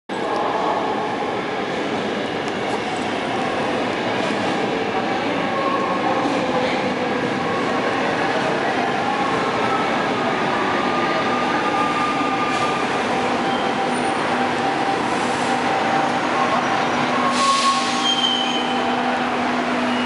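Metro Valparaíso electric commuter train pulling into an underground station, its motors and wheels running steadily with whining tones that shift in pitch as it brakes. A short hiss comes near the end.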